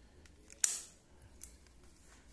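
Electric scooter's ignition key switch turned with a single sharp click about half a second in, with a couple of faint ticks around it.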